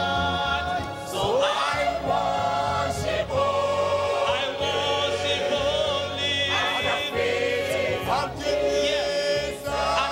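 Church choir singing a gospel hymn, men's voices on microphones leading with long, held notes with vibrato, over a steady low bass line.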